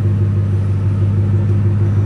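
Car engine idling, heard inside the cabin as a steady, loud low hum.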